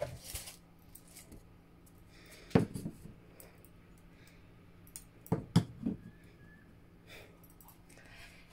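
Objects being set down on a cardboard box: one knock about two and a half seconds in as a cylindrical case is put down, then three quick knocks a little after five seconds as a glass perfume bottle is stood on top of it. Faint steady room hum in between.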